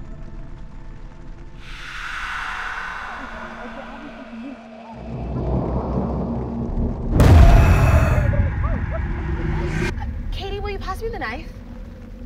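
Horror-film sound design: a low rumble swells into a sudden loud boom about seven seconds in, then fades into a lingering low drone.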